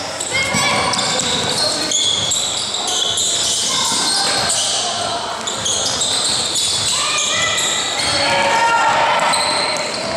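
Basketball game play in a gym hall: the ball bouncing on the court and sneakers squeaking in many short, high chirps, with an echoing hall sound.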